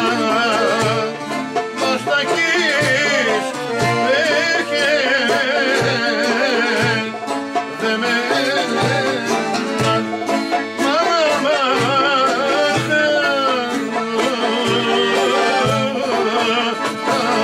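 Greek folk ensemble playing a traditional song: laouto plucked in steady accompaniment under a wavering, heavily ornamented lead melody, with a man singing.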